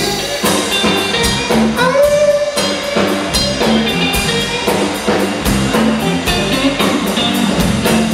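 A live blues band playing: electric guitar and bass guitar over a drum kit keeping a steady beat.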